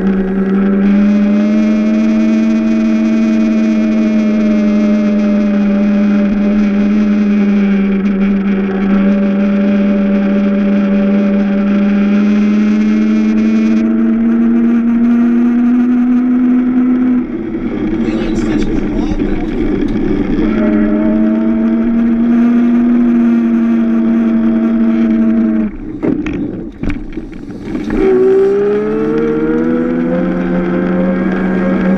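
Electric drive of a Power Racing Series kart running at race speed: a loud, steady whine whose pitch drifts up and down with speed. It drops away twice, in the second half and near the end, and then rises again as the car accelerates.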